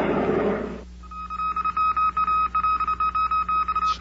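A loud rushing noise fades out in the first second, then a high beeping tone starts, keyed on and off in a rapid, irregular Morse-code-like pattern: a telegraph-style sound effect signalling a special bulletin on a 1950s radio broadcast.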